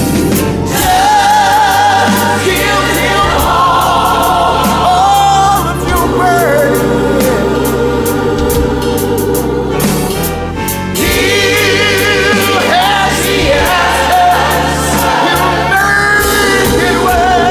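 Soul-gospel song playing: sung notes that waver and glide, held over bass, drums and band backing.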